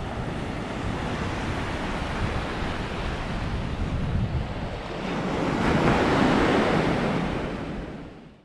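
Small surf waves breaking and washing up on a sandy beach, with wind buffeting the microphone. A wave swells louder about six seconds in, and the sound fades out near the end.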